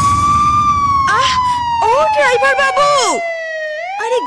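A siren sound effect in a DJ dance mix: one long tone that slides slowly down in pitch for nearly four seconds and starts again right at the end. A chopped vocal sample wavers over it in the middle, and the beat underneath drops out near the end.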